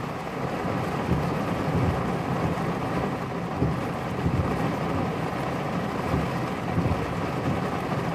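Steady low rumble of a vehicle driving in heavy rain, heard from inside the cab, with rain on the windshield.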